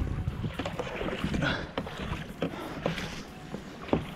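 Kayak paddling on water, with irregular splashes and knocks from the paddle strokes.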